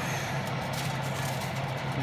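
Fan oven's convection fan running, a steady hum with an even rush of air.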